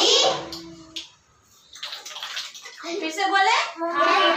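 Children's voices speaking in a room, with a short quiet gap about a second in and a breathy, hissing stretch before speech picks up again near the end.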